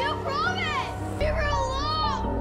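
A young girl's voice saying 'You promise me you won't hurt her' over a low, sustained film score.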